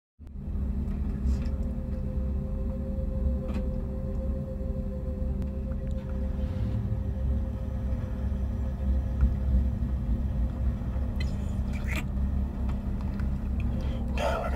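A steady low rumble with a faint, even hum held over it, and a few soft clicks.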